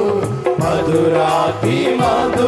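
Christian worship song: singing with instrumental accompaniment over a steady beat.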